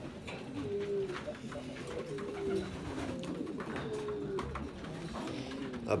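Domestic pigeons cooing in a loft: low coos repeating about once a second, several overlapping.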